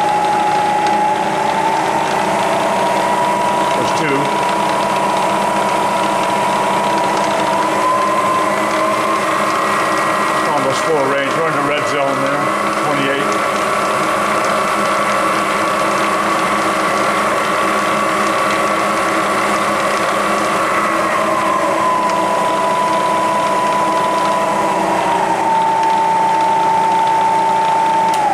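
Bridgeport Series I 2HP vertical mill's spindle and variable-speed belt head running in high range with a steady whine. The whine steps up in pitch twice as the speed-change handwheel is turned up, then steps back down twice later on. There is a click a few seconds in and some irregular mechanical rattling around the middle.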